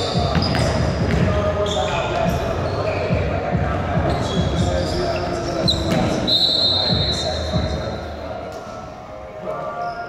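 Basketball being dribbled and bounced on a hardwood gym floor, with sneakers squeaking and players calling out, echoing in a large hall. The bouncing thins out and the level drops near the end as play stops.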